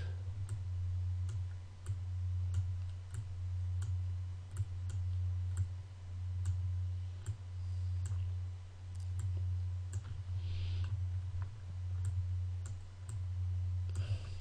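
Computer mouse clicking at a fairly even pace, about one to two clicks a second, as path points are placed one after another, over a steady low hum.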